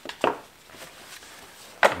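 A few light knocks and clicks of chainsaw parts being handled on a workbench, the loudest about a quarter second in. A man's voice starts near the end.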